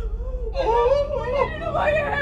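A woman crying and whimpering in distress, drawn-out wordless wails rather than speech.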